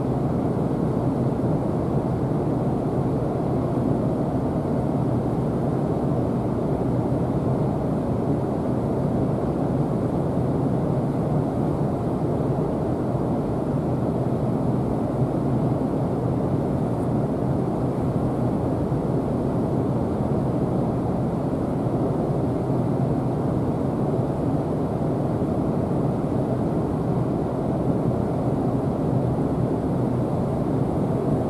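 Steady low rumble of the Shin Nihonkai ferry Hamanasu's engines mixed with the rush of water churned white by its propellers alongside the quay as the ship gets under way.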